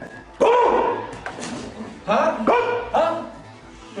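A dog barking: about four barks, the first about half a second in and three in quick succession in the last two seconds.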